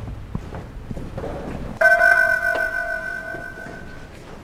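A single bell-like musical note strikes suddenly about two seconds in and rings on, slowly fading. A few faint knocks come before it.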